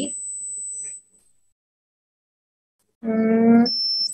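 About two seconds of dead silence, then a short steady pitched hum lasting under a second, with a faint high tone just before the end.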